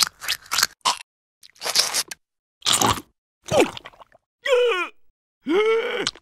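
Cartoon sound effects: a run of short crunching, biting noises, then two groaning vocal sounds from a cartoon character near the end.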